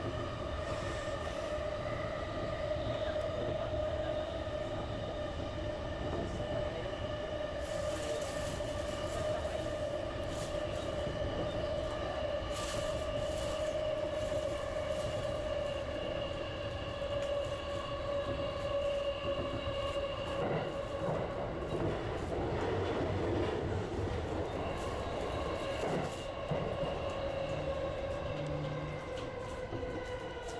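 JR Chuo Line electric commuter train running on its rails, heard from on board: steady wheel and rail noise under a whine of several steady pitches. Near the end the whine sinks slightly in pitch as the train slows into a station.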